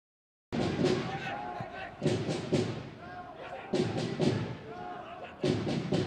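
Silence, then about half a second in, a voice starts abruptly over sharp thuds that come in clusters about every second and a half to two seconds.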